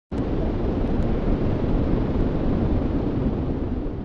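Steady rumbling noise, heaviest in the low end, that starts suddenly at the very beginning and holds even throughout.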